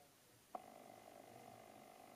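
Near silence: a soft click about half a second in, then a faint steady hum in a quiet room.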